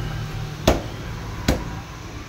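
A cleaver chopping through a parrotfish on a wooden log chopping block, cutting it into steaks: two sharp chops a little under a second apart.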